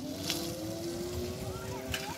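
Battery-electric auto-rickshaw pulling away, its motor whine rising steadily in pitch as it gathers speed, over road noise. Two light clicks, one near the start and one near the end.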